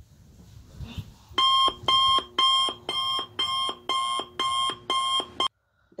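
An alarm going off: a short electronic tone pattern repeating about twice a second, starting about a second and a half in and cutting off abruptly near the end. Faint rustling of bedding before it starts.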